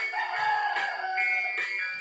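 Guitar music played from a phone through a TDA7056 mini-amplifier board and a bare loudspeaker. A long gliding call rises and falls over it in the first second.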